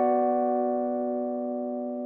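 Backing-track music: one held keyboard chord ringing steadily and slowly fading.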